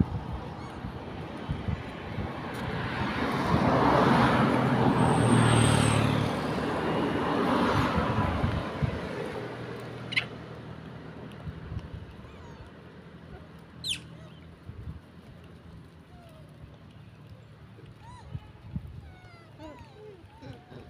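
A car passing on the road: its tyre and engine noise swells to a peak about five seconds in and fades away by about ten seconds. Two short sharp sounds follow, the second a quick high chirp falling in pitch.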